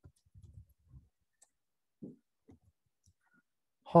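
Faint, scattered computer keyboard key clicks, a few keystrokes spread over the seconds as a short word is typed.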